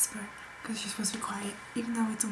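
A woman talking quietly, close to a whisper.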